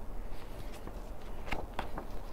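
A page of a large hardback picture book being turned: two short paper sounds near the end, over a steady low room hum.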